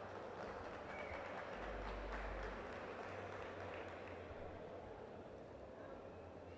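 Faint, quick hoofbeats of a Colombian trocha mare moving at the trocha gait, heard over steady background noise from the arena stands.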